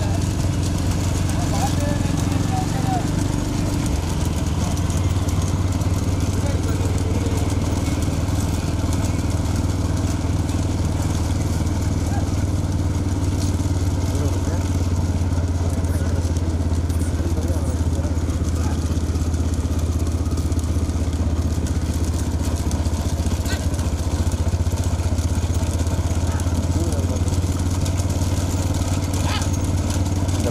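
A pack of motorcycles running together at steady speed, their engines making a continuous low drone, with people's voices over it.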